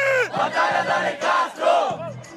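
A crowd shouting and yelling, several voices in rising-and-falling cries, one of them loud and close to the microphone, hyping up a freestyle rap battle.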